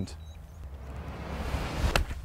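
Wind noise building on the microphone, then a single sharp strike of a golf iron hitting the ball off a tee mat near the end.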